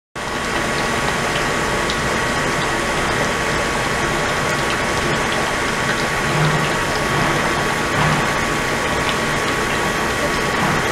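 Ultrasonic cleaning tank running with water pouring in from a hose: a steady rush of churning water, with two thin, steady high whining tones over it.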